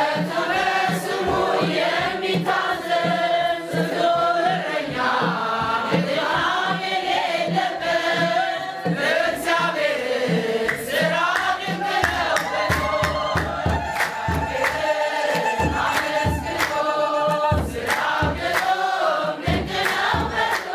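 An Ethiopian Orthodox mezmur sung by a mixed choir of men and women, voices together in one melody, with hand claps keeping a steady beat. Midway through, the choir holds one long note.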